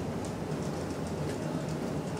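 Small fan motor run by a three-phase H-bridge starting to spin, with faint irregular ticking over a steady low hum.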